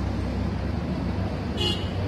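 A steady low rumble of background noise, with a brief high-pitched sound near the end.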